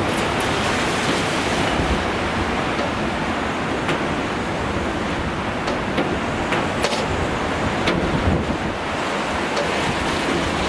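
Storm surf surging and breaking against a concrete sea wall: a steady, dense roar of rough sea mixed with wind buffeting the microphone, with a few brief sharp ticks.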